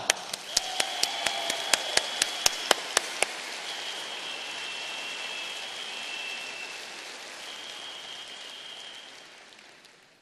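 Audience applauding, with a few sharp, close claps standing out during the first three seconds, then dying away over the last few seconds.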